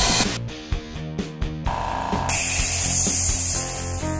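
Besto 1-hp air compressor running with a steady low hum. A short edited-in music clip plays over it in the first half.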